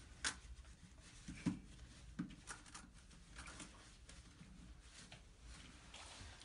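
Faint handling sounds of a doll being washed by hand in a small plastic tub of water: a handful of quiet, short, scattered splashes and knocks.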